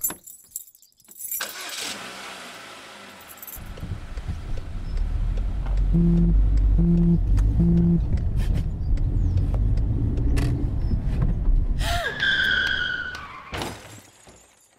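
Sound effects of car keys jangling and turning in the ignition, then a car engine running with a low rumble. Partway through, a phone vibrates with three short buzzes about a second apart as text notifications arrive. Near the end comes a brief screech of tyres skidding just before a crash.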